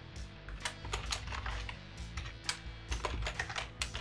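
Typing on a computer keyboard: a run of irregular key clicks, with quiet background music underneath.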